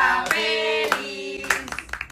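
Several voices singing a birthday song with hand clapping, the claps landing as sharp beats under the held sung notes.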